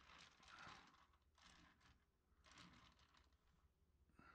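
Near silence with a few faint, scattered rustles.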